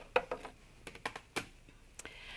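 A handful of light plastic clicks and taps as a stack of clear cutting pads is slid out of a die-cutting machine and a die-cut cardstock shape is taken off, one sharper click a little after halfway.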